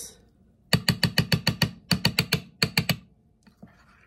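A spoon stirring thick soaked oats and yogurt in a bowl, clicking against the side of the bowl about seven times a second in three quick runs, starting about a second in.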